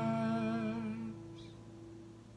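A man's voice holds the final note of the hymn with vibrato and stops about a second in, while the last acoustic guitar chord rings on and fades away.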